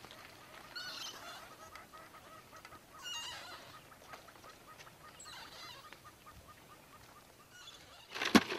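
Faint bird calls, heard three or four times, with a row of short, evenly spaced chirps between them.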